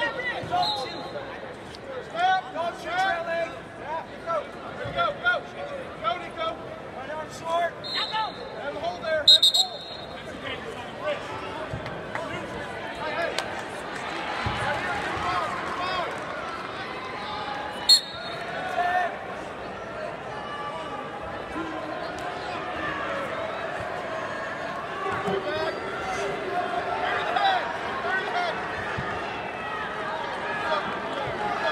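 Voices of coaches and spectators shouting across a large arena during a wrestling bout, punctuated by short referee's whistle blasts: one at the very start, two about eight and nine seconds in (the second is the loudest sound), and another about eighteen seconds in.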